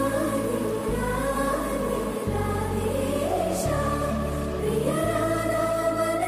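Background score: a choir singing long held notes over a deep bass that changes note about every second and a half.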